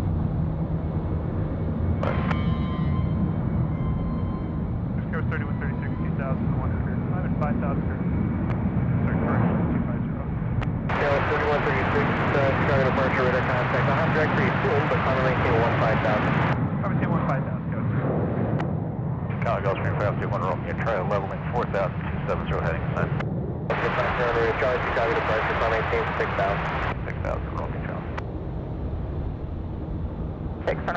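Jet airliner engines at an airport, a steady low rumble, with bursts of garbled air traffic control radio voice coming in about 11 seconds in and twice more later.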